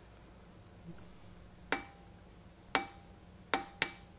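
Hammer tapping a pin punch to drive a pin into an aluminum silencer monocore: four sharp metallic strikes, each with a brief ring, the last two close together.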